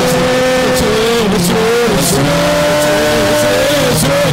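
A man singing a devotional melody into a microphone in long held notes that waver and slide, over sustained accompanying chords.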